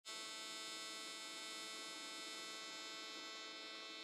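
AC TIG welding arc on aluminum, a steady buzz made of many evenly spaced tones, at the 200 Hz AC frequency the machine is set to.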